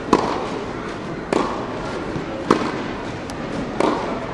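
Tennis practice rally: four sharp pops of the ball off racket strings and the clay court, about a second and a quarter apart, over a steady background murmur of the hall.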